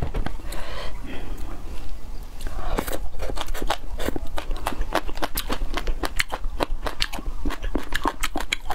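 Close-miked chewing of food: a dense, irregular run of wet clicks and crunches that begins about two and a half seconds in.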